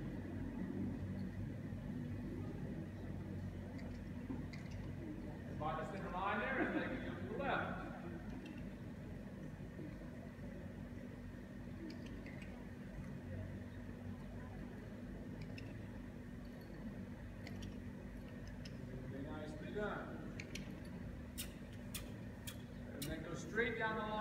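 A distant person's voice speaks briefly about six seconds in and again around twenty seconds, too faint to make out, over a steady low hum of room noise. A few sharp clicks come near the end.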